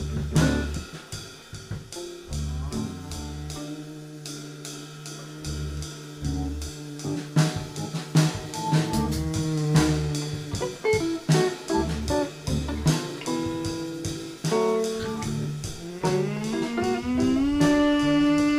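Live rock band playing an instrumental passage: drum kit hits, electric guitar and low bass notes. Near the end a held note slides up and sustains.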